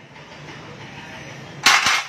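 A steel scooter clutch bell is set down onto a metal tray of CVT parts, giving one short, loud metallic clatter near the end. Before it there is a steady low hiss of background noise.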